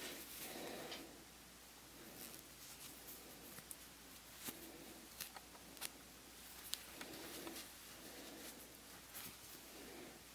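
Faint rustle of hands working a yarn tail through knitted wool fabric with a crochet hook, with a few small scattered clicks.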